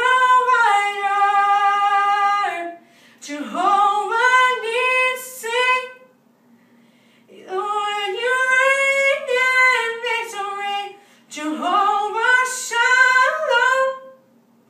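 A woman singing a worship song unaccompanied, with no instruments. It opens on a long held note, then runs through several shorter phrases with brief pauses between them.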